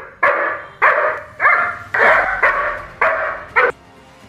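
German shepherd guard dog barking at an intruder, a run of about seven loud barks at roughly two a second.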